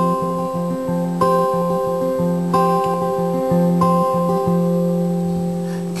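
Acoustic guitar strummed in an instrumental passage without singing, the chord changing about every 1.3 seconds.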